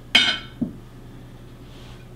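Tableware clinking at the table: one sharp, ringing clink just after the start that dies away quickly, followed about half a second later by a softer, lower knock.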